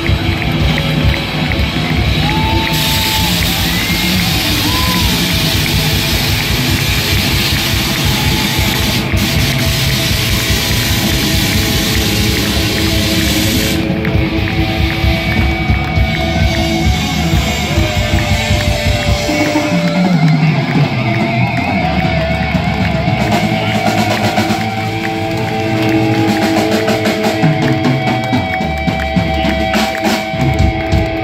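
Live heavy metal band playing loud with no vocals: distorted electric guitar lead lines with bent notes over bass guitar and drum kit.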